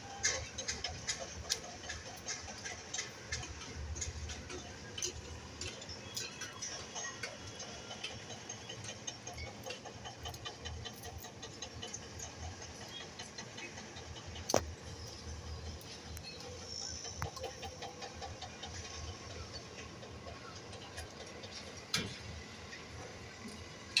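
Knife slitting flame-roasted okra pods lengthwise over a steel plate: small irregular clicks and taps of the blade against the steel, with one sharper click about halfway through.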